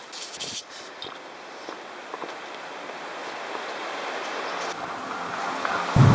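Steady rushing of a tall waterfall, growing louder as the cliff edge above it is neared. A few crunching steps and brush rustles come in the first second.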